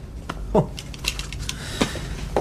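A few light clicks and knocks of small objects being handled and fumbled, with a brief spoken 'Oh'.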